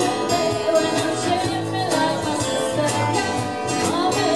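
Live music: a singer over a strummed guitar in an upbeat, old-time rhythm.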